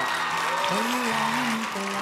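Studio audience applauding, with soft background music underneath.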